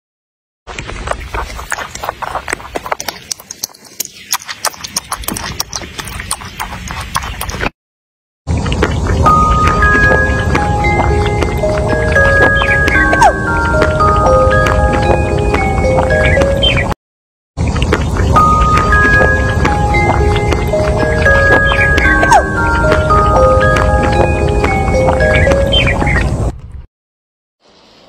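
A rabbit chewing: a quick, irregular run of crisp crunching clicks for about seven seconds. After a short break a bright tune of bell-like notes plays over a low rumble, stops briefly about halfway and then starts again.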